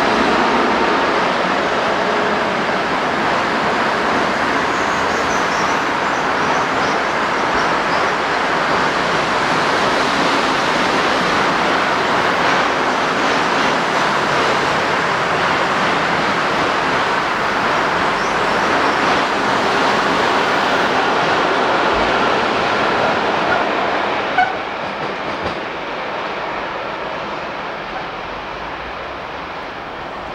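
A long freight train carrying lorries on rail wagons runs past close by, its wheels rumbling and clacking over the rail joints. About 24 seconds in there is a single sharp knock, and the rolling noise then dies away.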